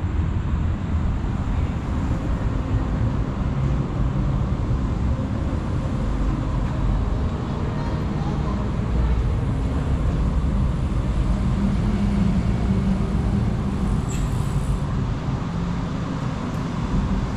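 Steady low rumble of road traffic heard from beneath a road bridge, with faint voices of passers-by and a brief sharp click near the end.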